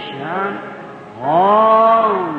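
Slow worship singing in a church service: a voice holding long notes that glide up and down, dipping briefly about a second in before rising into a held note, on an old, muffled recording.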